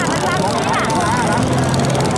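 A boat engine running steadily with a low drone, under a man's excited drawn-out calls.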